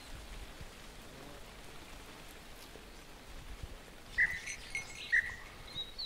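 Faint outdoor hiss, then two short steady blasts of a falconer's whistle about four and five seconds in, calling the hawk's attention to the lure. A few quick high falling chirps come near the end.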